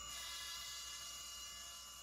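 Faint steady whine and hum of a CNC mill's spindle while a ball-end cutter machines polystyrene foam, slowly fading out.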